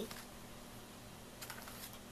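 Quiet room with a few faint, light taps in the second half: a child's hands handling a picture book.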